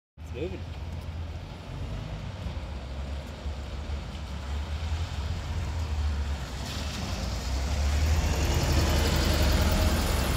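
Double-decker bus engine running with a deep, steady rumble, growing louder as the bus moves off and drives close past. Rising hiss and a faint whine come in over the last few seconds.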